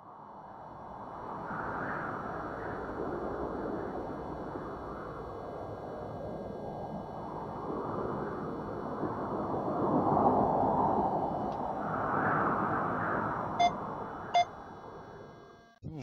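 An edited intro sound effect: a rushing, wind-like drone that fades in, swells and fades out, with faint steady high tones over it and two short sonar-like pings near the end.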